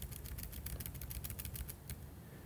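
Typing on a computer keyboard: a quick, uneven run of key clicks, about ten a second, as text in a search box is edited.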